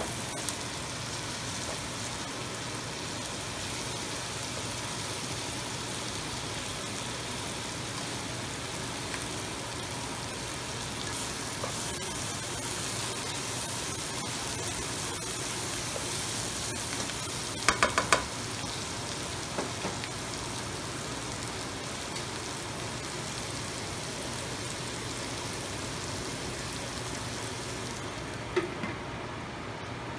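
Chicken and sliced onion sizzling steadily in oil in a nonstick wok as they are stirred with a spatula. About eighteen seconds in comes a quick run of three or four sharp metallic taps with a short ring. Near the end the sizzle turns duller, with a clink, as a stainless steel lid goes on the pan.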